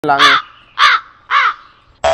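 A crow cawing three times in quick succession, each call short with a rise and fall in pitch.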